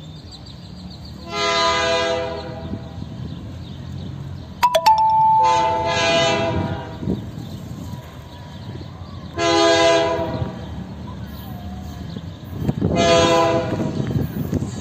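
Air horn of an approaching KCSM EMD GP38-2 locomotive sounding four blasts, long, long, short, long: the grade-crossing signal. A steady low rumble of the train runs underneath, and a sharp click comes about five seconds in.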